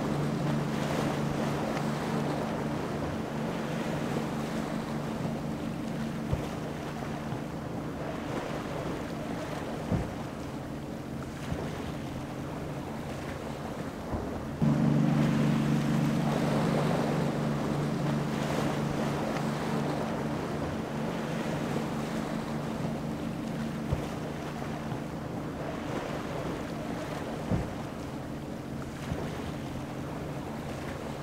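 Cigarette Racing center-console powerboat's quad outboard engines running at speed, a steady low drone over rushing water, with wind on the microphone and a few short knocks. The engine sound jumps louder about halfway through.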